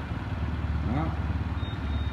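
Honda CM125 Custom's small air-cooled parallel-twin engine idling steadily, a low even pulse.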